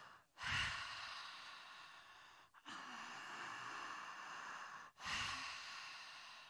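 A woman taking slow, deep breaths into a stage microphone: three long breath sounds, each about two seconds, with brief pauses between them.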